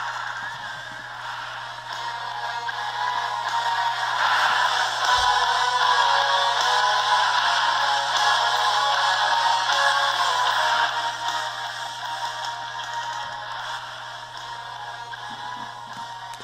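Film trailer soundtrack music played back through the Nokia N900's small built-in loudspeaker, thin with almost no bass. It swells over the middle seconds and fades toward the end, over a faint steady low hum.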